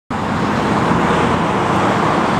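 Steady motor-vehicle noise: a low hum under an even hiss.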